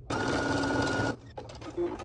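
Computerized sewing machine started with its start/stop button, stitching at a steady high speed for about a second and then stopping. A few light clicks follow.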